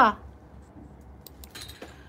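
A woman's spoken word ending, then a pause with a few faint light clicks and a brief soft rustle near the end.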